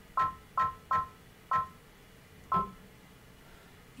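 Baby Lock Alliance embroidery machine's touchscreen beeping at each button press: five short two-tone beeps, unevenly spaced, most in the first half. The presses jog the hoop to centre the positioning laser on the design.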